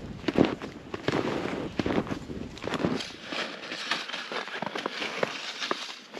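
Snowshoe footsteps crunching through deep snow, an irregular run of sharp crunches and crackles.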